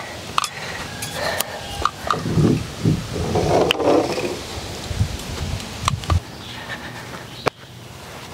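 A caulk gun being worked on exterior trim: scattered sharp clicks from its trigger, with low thuds and handling rumble, loudest in the middle.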